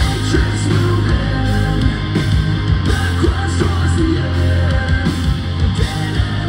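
A live heavy metal band playing loud, with distorted guitar, bass and drums.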